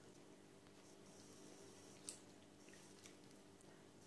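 Near silence, with faint squelching from a gloved hand stirring milk, oil and butter in a glass bowl, and one soft click about two seconds in.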